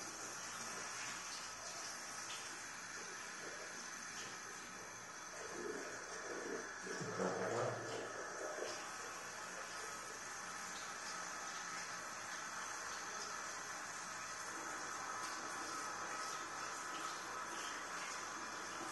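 Tap water running steadily into a ceramic washbasin, turned on as the sound begins, with hair being washed under the stream. It grows louder and fuller for a couple of seconds around seven seconds in.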